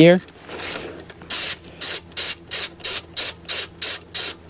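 Hand ratchet wrench loosening a 10 mm bolt: a run of short ratcheting buzzes on the back strokes, about three a second, starting about half a second in.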